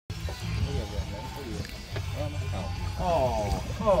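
Steady low rumble of a boat's engine running at idle, under voices, with a long falling 'oh' of excitement near the end.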